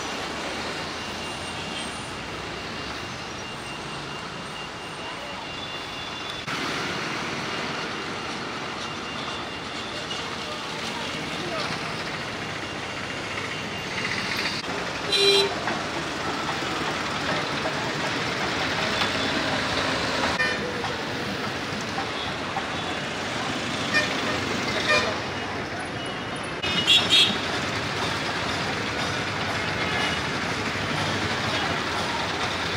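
Road traffic running steadily, with short vehicle horn toots about halfway through and several more near the end.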